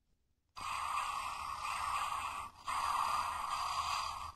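A steady hissing noise starts about half a second in and runs in two stretches of about two seconds each, with a short break between them.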